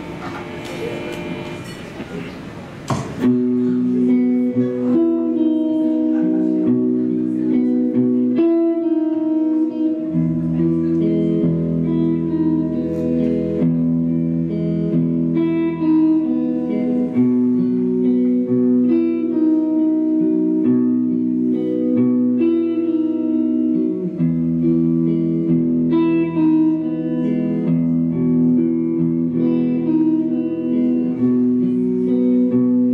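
Live electric guitar picking a slow, repeating figure of ringing held notes, starting about three seconds in after a few seconds of crowd noise; an electric bass joins with low held notes about ten seconds in, drops out, and comes back near the end.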